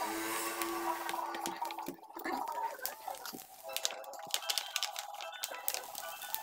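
Plastic polarizer film being peeled off the glass of an LCD panel, giving a run of irregular sharp crackles and clicks from about a second and a half in. The film is the old polarizer, which had bubbled.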